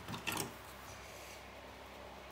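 A few short rustles and taps as the paper card of a scrapbook album cover is handled, in the first half second, then quiet room tone.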